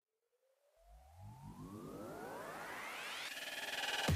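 Near silence for about the first second, then a synthesizer riser: a cluster of tones gliding steadily upward in pitch and growing louder, building up into an electronic dance track.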